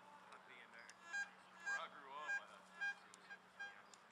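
Metal detector sounding a string of five short, identical beeps, about half a second apart, from about a second in: the tone it gives over a buried metal target.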